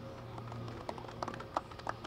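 Scattered, light clapping from a few people: irregular single claps rather than full applause, over a faint low hum.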